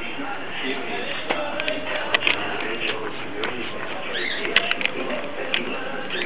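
Outdoor background of small birds chirping, with faint distant voices and a few sharp clicks.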